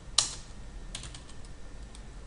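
Computer keyboard keystrokes: a few separate, uneven taps as a word is typed, the first one the loudest.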